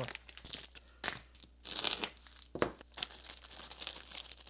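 Plastic packaging crinkling in a few short bursts as small zip bags of electronic components are handled, with a light click part way through.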